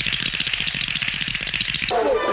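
Editing sound effect: a rapid, even rattle of clicks that cuts in suddenly and stops abruptly near the end.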